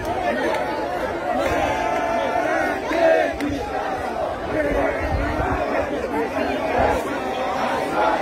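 A crowd of children chattering and calling out over one another, many voices overlapping with no single speaker standing out.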